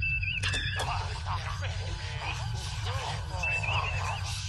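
Klingon radio transmission played over the starship bridge speakers: untranscribed alien-language voices over the bridge's steady low hum. A short warbling electronic tone sounds at the start and again about three and a half seconds in.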